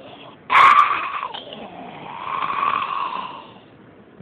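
A man doing hoarse, breathy zombie snarls. A sudden harsh snarl comes about half a second in, then a longer snarl swells and fades away near the end.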